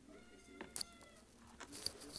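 A cat meowing once, a drawn-out call of about a second that falls slightly in pitch. Light clicks and rustles of a cardboard box being handled follow in the second half.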